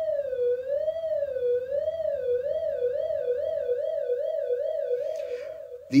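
Modular synthesizer oscillator (Q169 Oscillator++) sounding a single triangle-wave tone, its pitch wobbling up and down under LFO vibrato. The wobble speeds up from about one cycle a second to about three a second as the LFO rate is turned up, and the tone cuts off shortly before the end.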